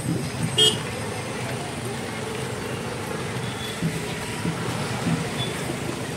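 Motor scooters running slowly alongside a walking crowd, with a murmur of voices. A single short vehicle horn toot about half a second in.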